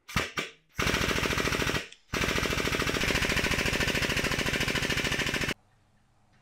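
MIG welder arc crackling in two runs, a short burst of about a second and then a longer one of about three and a half seconds, after a couple of brief sputters at the strike; it cuts off sharply.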